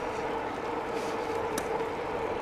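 KBO K2 folding e-bike riding at about 20 mph under level-5 pedal assist: the motor gives a steady whine over tyre and wind noise on pavement, with one faint click about one and a half seconds in.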